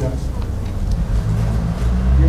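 A man speaking haltingly in Polish into a microphone, over a steady low hum.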